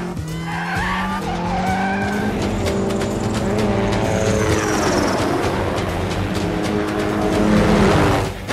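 Film chase sound mix: several Mini Cooper engines revving up and down with tyre squeals, over a helicopter's rotor chop and a music score.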